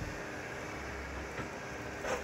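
Compact excavator's diesel engine running steadily at a distance as the machine moves brush with its bucket: a low, even rumble.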